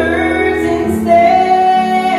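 A woman singing with instrumental accompaniment, holding one long note from about a second in.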